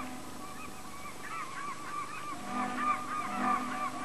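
A flock of birds calling, many short, overlapping cries in quick succession, with a low steady tone coming in beneath them in the second half.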